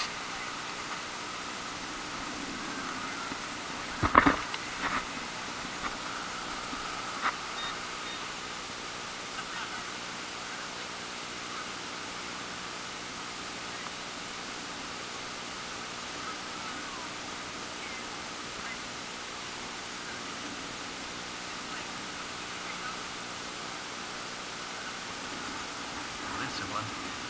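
Steady outdoor hiss with a sharp knock about four seconds in and a few lighter clicks, from digging a detector target out of beach sand.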